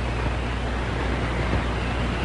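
Steady rushing noise over a low hum.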